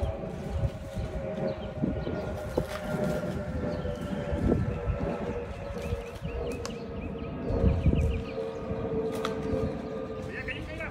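A small engine running steadily with a constant droning tone, from power equipment on the palm-removal job. Wind buffets the microphone, and a bird chirps briefly about two-thirds of the way in.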